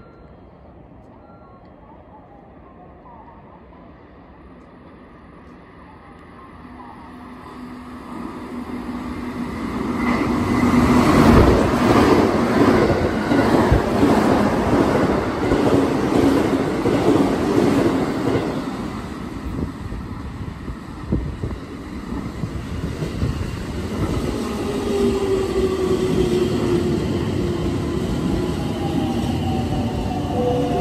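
A ten-car Chūō Line rapid train of 211 series 5000 and 313 series 1100 cars passing through the station at speed without stopping. The rumble of wheels on the rails swells from about six seconds in and is loudest for roughly ten seconds, then eases. A gliding whine comes in near the end.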